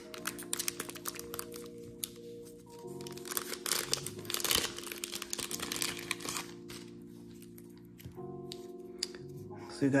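A shiny trading-card booster pack wrapper being crinkled and torn open by hand. There are two spells of crinkling, the second longer, over soft background music.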